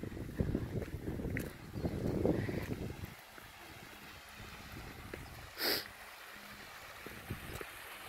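Wind buffeting a phone microphone and handling noise for the first three seconds, heard as an uneven low rumble. Then a quieter outdoor background, with one short breathy puff a little past halfway.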